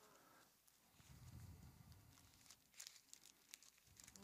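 Near silence, with faint rustling of thin Bible pages being leafed through, a few soft paper strokes in the second half.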